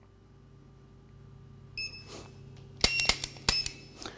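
An electronic shot-timer beeps once. About a second later comes a quick string of sharp dry-fire trigger clicks from a Taurus G2 PT-111 pistol firing a laser training cartridge, with short electronic tones mixed in.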